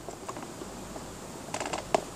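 Low, steady room tone with no machine running, and a few light clicks in the last half second.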